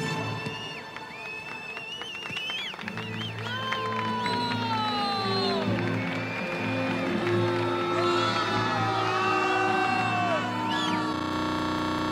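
Background music with held chords under a crowd cheering and whooping. A single light knock of a bat meeting a bunted baseball sounds at the very start.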